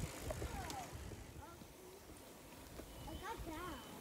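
Faint low wind rumble on the microphone while riding a bicycle along a paved trail, with faint distant voices about three seconds in.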